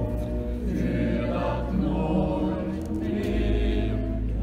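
Church choir singing in sustained chords, with a steady low bass held beneath the voices.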